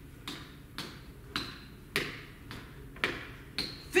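Feet tapping down on a gym floor in a crab-position switch-hips drill: a steady run of light thuds, about two a second.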